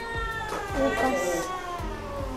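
A cat giving one long, drawn-out meow that slowly falls in pitch, heard over background music.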